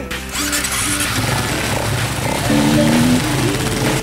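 Several off-road motorcycles revving and pulling away on a dirt track, mixed with a pop song playing over them.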